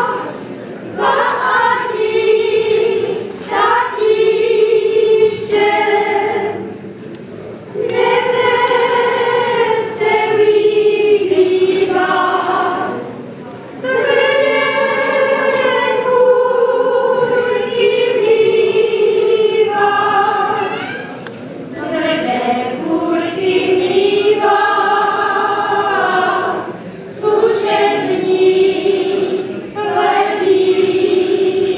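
A group of women singing a Moravian folk song together without instruments, in phrases of a few seconds with short breaths between.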